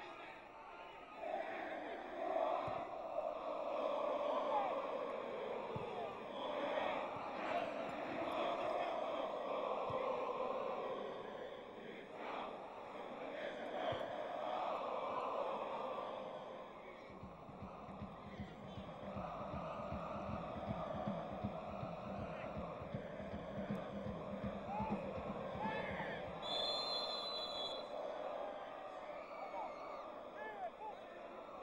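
Stadium crowd of football supporters singing and chanting together, scarves held aloft. For several seconds past the middle a fast rhythmic low pounding joins the singing, and near the end a short high whistle sounds.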